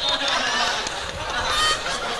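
A man laughing hard into a handheld microphone.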